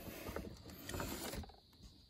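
Faint small clicks and rustling of hands working at the fittings under a car's dashboard, fading to near silence near the end.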